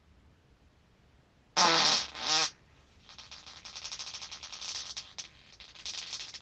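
A human fart: two loud blasts with a wavering, rumbly pitch about one and a half seconds in. From about three seconds it goes on as a long, quieter crackling sputter of rapid little pops.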